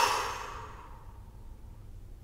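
A woman sighs: one breathy exhale, loudest at the start and fading away over about a second.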